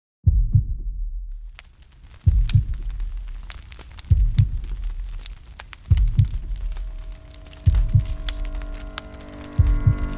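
Heartbeat sound effect: a deep double thump, lub-dub, repeating about every two seconds, six beats in all. Faint high clicks run under it, and a drone of held tones builds in the second half.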